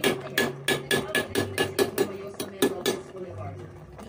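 Metal spoon knocking against the side of a metal cooking pot in a quick, even run of about five clinks a second, stopping after about three seconds.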